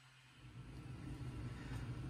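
Lionel L1 model steam locomotive's electric motor and worm gearbox starting up about half a second in and running with a low hum that gradually builds. The motor has been shimmed lengthwise to give the worm gear more freedom so it no longer locks up in reverse.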